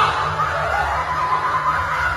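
A person laughing quietly, over a steady low hum.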